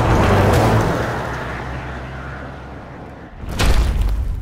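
A rushing whoosh with a low rumble that fades over about three seconds, then a heavy, booming impact sound effect near the end.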